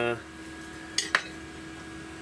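Two quick metallic clinks about a second in, from windlass parts being handled and set against each other during reassembly.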